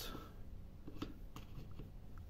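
Faint clicks and light handling noise as an oscilloscope probe is pushed into a power-strip socket, over a faint low steady hum.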